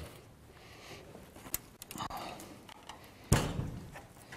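An old farmhouse door being pushed open: a sharp click about one and a half seconds in, some small knocks, then a heavy thud a little after three seconds, the loudest sound.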